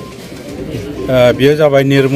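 A man's voice: a short pause in his speech, then a drawn-out spoken sound beginning about a second in.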